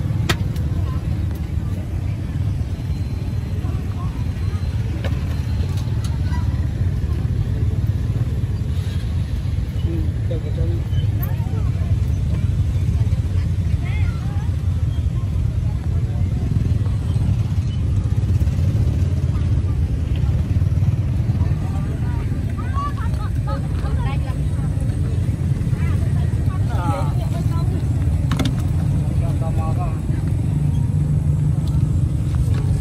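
Street ambience: a steady low rumble of traffic with people's voices in the background, more noticeable in the last several seconds.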